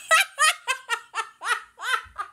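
A woman laughing hard: a rapid run of short, pitched 'ha' sounds, about four to five a second.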